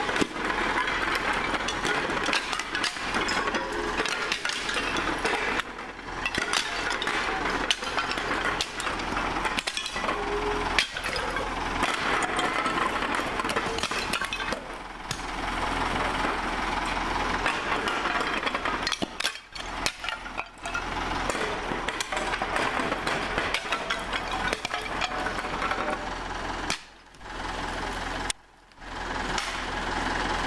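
Clay roof tiles clinking, clattering and breaking as they are worked loose and dropped from an old tiled roof, many sharp knocks over a continuous rustling clatter. A steady low hum runs underneath.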